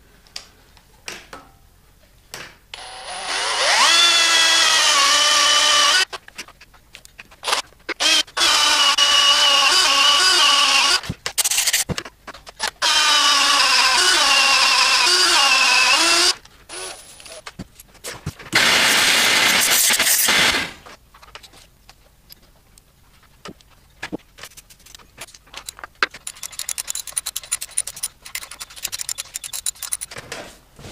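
Cordless drill running through a drilling jig to drill out a stripped head bolt hole in an aluminium LS V8 block, in four long runs that stop abruptly, the first climbing in pitch as the drill spins up. Clicks and tool handling follow in the last third.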